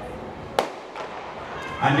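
A single sharp crack of the starter's pistol about half a second in, starting the 100 m sprint, over a steady background of crowd noise.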